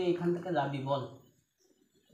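A man's voice in long, drawn-out sing-song tones, stopping about one and a half seconds in.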